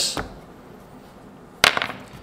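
A sharp click with a brief rattle about one and a half seconds in: the removed metal shower screen and group gasket being set down on a hard surface.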